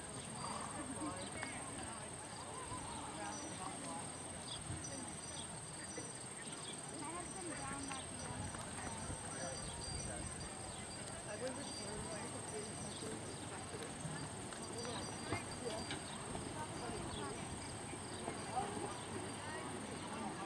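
A horse's hoofbeats at the canter on sand arena footing, with people talking faintly in the background.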